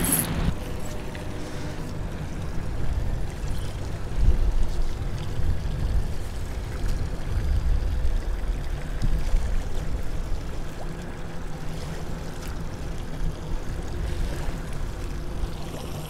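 Wind buffeting the microphone in an uneven low rush, with choppy river water lapping against the hull of a small fishing boat.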